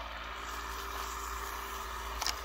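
A steady low hum with an even hiss over it, unchanging throughout, with no distinct events.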